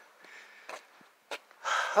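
A quiet pause with faint handling noise and two small clicks, then an intake of breath and the start of a man's voice near the end.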